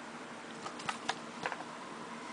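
Trading cards being handled by hand: a quick run of about six light clicks and taps of card stock in the middle, over a faint steady hiss.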